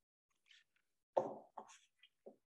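Chalk striking a blackboard while writing: two short, sharp taps, the first about a second in and the second half a second later.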